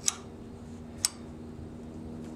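Two light metal clicks about a second apart as an open-end wrench is fitted onto the timing-belt tensioner nut. A faint steady hum runs underneath.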